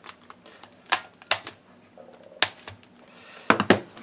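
Sharp clicks and knocks from two hard-plastic handheld cordless screwdrivers as they are handled and set down on a wooden table. There are about five clicks, two of them close together near the end.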